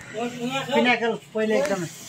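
Speech only: a person talking in two short phrases.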